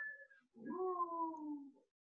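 A person's voice saying a single drawn-out 'No', quiet and sliding down in pitch.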